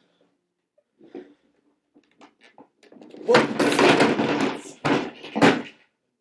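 A rider falling off a child's plastic ride-on toy motorbike: a few light knocks, then a loud clatter and thuds of the toy and a body hitting the floor, from about halfway through, with two sharp knocks near the end.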